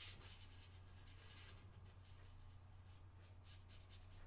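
Faint short strokes of a Chameleon alcohol marker's brush tip rubbing on paper, repeated in quick runs, over a low steady hum.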